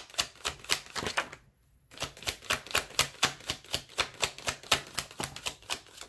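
Tarot cards being shuffled by hand: a quick run of card clicks, about seven or eight a second, with a short pause about a second and a half in.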